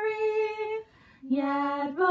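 A woman singing a Christmas hymn alone, without accompaniment. She holds a note, breaks off briefly for a breath about a second in, then comes back on a lower note and steps up near the end.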